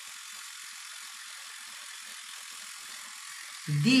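Child's battery-powered electric toothbrush running in his mouth during brushing, a steady high buzzing rattle; its battery is running low.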